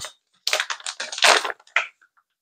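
Plastic packaging bag rustling and crinkling in a run of short bursts as a fabric pillow cover is pulled out of it.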